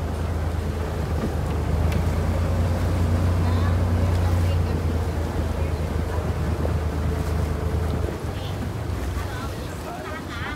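Engine of the small boat the camera rides on, running with a steady low drone under water and wind noise. The drone eases off about eight seconds in.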